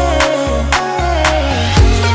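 Background music with a steady beat of about two drum hits a second over deep bass and held melodic notes.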